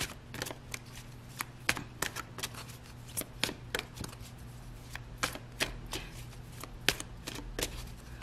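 A deck of tarot cards being shuffled by hand: a run of short, irregular snaps and clicks of cards, about two or three a second, over a faint steady hum.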